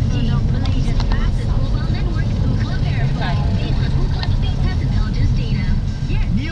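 Steady low rumble of road and engine noise inside a moving car's cabin, with indistinct voices talking over it.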